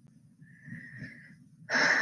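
A woman's breathing in a pause between sentences: a faint breath about half a second in, then a louder in-breath near the end, just before she speaks again.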